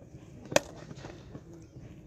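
A cricket bat striking the ball once, a sharp crack with a brief ring, about half a second in.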